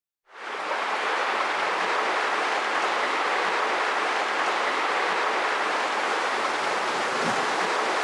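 A steady, even rushing noise, like hiss or running water, that fades in within the first half second and then holds at one level.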